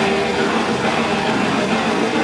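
Death metal band playing live: distorted electric guitars and a drum kit in a dense, loud, unbroken wall of sound.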